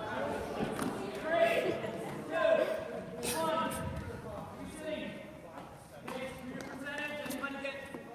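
Voices of students calling and chattering in a gymnasium, echoing in the large hall, with a few sharp knocks mixed in.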